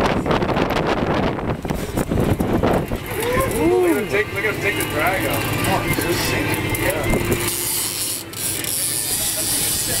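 Big-game fishing reel working under load, its drag and ratchet clicking as a hooked mahi mahi pulls line off. Heavy wind buffets the microphone at first, and short rising-and-falling whoops come in from about three seconds on.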